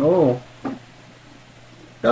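A short hummed 'mm' from a person at the start, rising then falling in pitch, with a brief fainter vocal blip just after; otherwise only faint steady background hiss.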